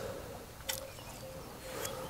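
Quiet open-water background beside a boat on a lake, with a faint intermittent hum and a single short click a little before halfway through.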